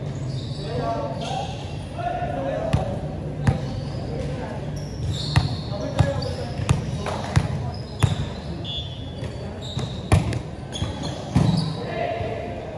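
A volleyball bouncing on a hard indoor court floor, sharp knocks about two-thirds of a second apart as it is dribbled before a serve, then a further smack near the end as it is served. Players' voices carry in a large, echoing gym hall.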